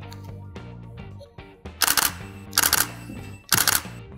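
Camera shutter firing in three short bursts of rapid clicks, about two seconds in, near three seconds, and near the end, over background music.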